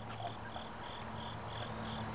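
A cricket chirping in a steady rhythm, about three chirps a second, over faint low background hum.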